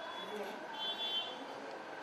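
High-pitched electronic beeping heard twice, the second beep longer and louder, over faint background voices.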